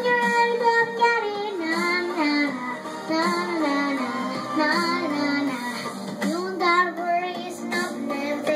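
A young girl singing over backing music, holding long notes that glide up and down in pitch.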